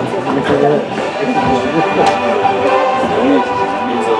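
A recorded song about the GTO fitness badge playing over loudspeakers in a large room: instrumental backing with guitar-like parts and a voice.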